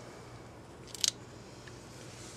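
A single short, sharp metallic click about a second in, as a transmission part is fitted onto the splined shaft, over a faint steady hum.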